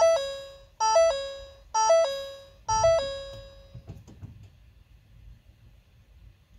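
Ford Focus ST instrument-cluster warning chime sounding four times, about a second apart. Each is a short falling three-note chime that dies away, given as warning messages come up with the electric parking brake put into maintenance mode.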